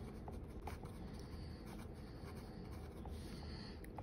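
Pen writing on lined notebook paper: faint, steady scratching of the tip across the page as a line of words is written.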